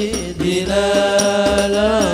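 Sholawat sung by voices over hadroh frame drums beating a steady rhythm; from about half a second in the singers hold one long note that bends up slightly at the end.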